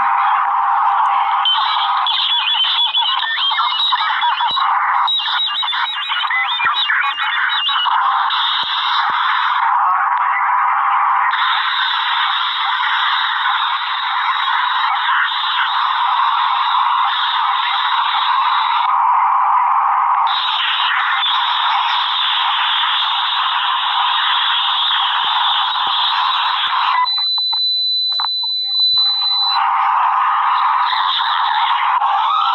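A cartoon video's soundtrack played back at four to five times normal speed: a dense, garbled, high-pitched jumble of squeaky sped-up voices and music with no gaps. About three seconds before the end it drops to a single steady high beep.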